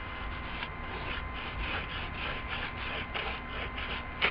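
Paintbrush being wiped off on paper, a rhythmic rubbing of about three to four strokes a second.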